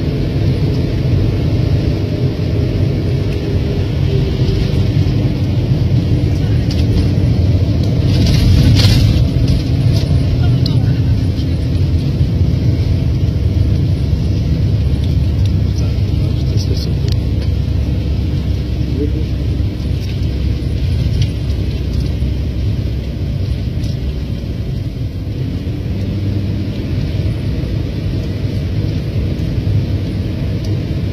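Car engine and road noise heard from inside a moving car: a steady low rumble, with a louder rush about nine seconds in.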